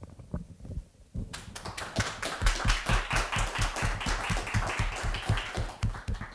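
An audience applauding. After a few scattered claps, the clapping swells into dense applause about a second in.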